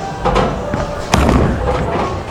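A bowling ball rumbling down a wooden lane. A sharp, loud crash comes about a second in, and a low rumble trails after it.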